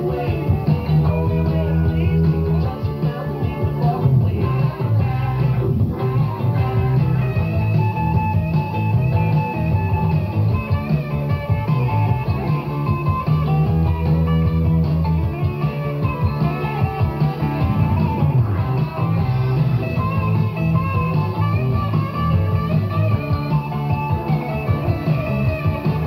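Rock music with electric guitar and a steady beat, played back from a cassette tape of a radio broadcast.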